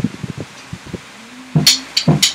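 A rock track drops to a quiet break with a few soft low thumps and a short held low note, then drums come back in about one and a half seconds in with hard, evenly spaced hits, about four a second, played along on a Yamaha DTX electronic drum kit.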